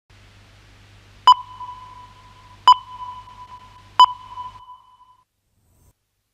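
Three short electronic test-tone beeps, each a single pitch that rings out briefly, evenly spaced about a second and a half apart, as over colour bars at a programme start. A faint low hum runs beneath them and stops just after the last beep.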